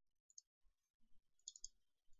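Near silence, broken by a few faint computer mouse clicks.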